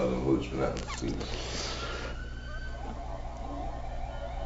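Speech: a man's voice for about the first second, then quieter, fainter voices with a brief soft rustle.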